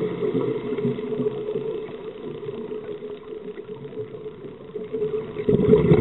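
Underwater rumble of a scuba diver's exhaled regulator bubbles, louder at first, fading about two seconds in and swelling again near the end as the next breath goes out, over a faint steady hum.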